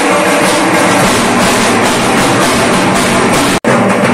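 A group of dhak drums, the large barrel drums of Durga Puja, beaten together in a loud, dense, fast rhythm. The sound breaks off for an instant near the end.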